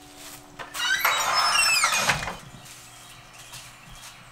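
Wooden shop door squealing on its hinges as it is pushed open: one high, downward-sliding squeak lasting about a second, starting about a second in.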